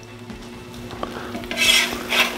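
Metal spatula scraping on a steel griddle top, a short loud scrape about one and a half seconds in, over a faint sizzle.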